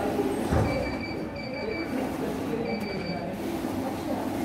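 Banknote counting machine running and feeding notes through as its count climbs, with a thin high whine in two spells. A low thump comes about half a second in.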